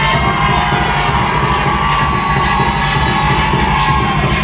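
A nightclub crowd cheering and shouting over loud playback music with a steady beat.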